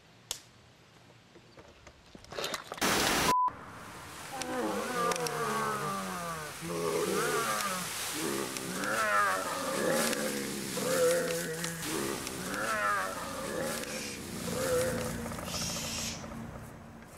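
A short burst of static ending in a brief beep about three seconds in, then a run of loud wordless cries or roars whose pitch slides up and down, one every second or two.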